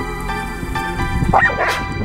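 Music with steady sustained notes, and a dog gives one short yelping bark about one and a half seconds in.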